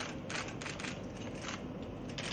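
Press photographers' camera shutters clicking in quick, overlapping bursts, several clicks a second.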